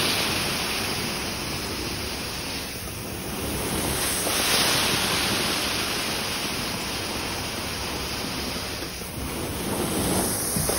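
Carpet-cleaning extraction wand spraying hot water and sucking it back up as it is drawn across the carpet, a strong steady rushing hiss of suction. The hiss swells near the start and again about halfway through as the wand moves.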